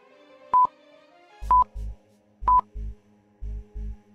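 Short high electronic beeps about once a second, three in all, from a countdown-timer sound effect, over soft background music. From about a third of the way in, low paired thumps join, about once a second.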